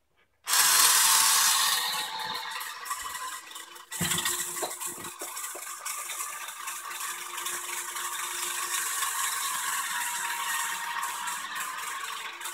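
Nintendo Ultra Machine toy pitching machine switched on about half a second in, its motor and gears running with a steady rattling whir as the arm cycles through pitches. A few short knocks come around four to five seconds in.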